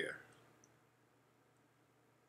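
A man's voice ends on a word, then near silence: quiet room tone with one faint click about half a second in.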